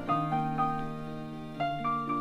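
Piano playing a slow, gentle phrase of single notes over held chords, about five notes each struck and left to ring out, in a soft, sad ballad recording.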